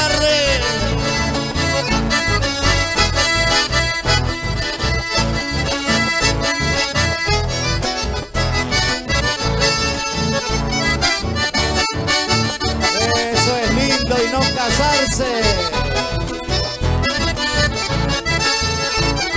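Accordion-led Argentine litoral folk band playing live, an instrumental passage over a steady, evenly pulsing bass beat.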